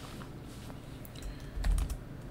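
Computer keyboard being typed on: a few separate keystrokes, then a quick run of key clicks near the end.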